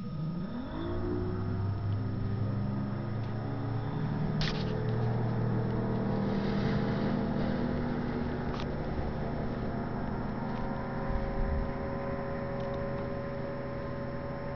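Tow engine revving up over about a second, then running steadily under load as it pulls a paraglider off the ground, with a couple of sharp clicks partway through.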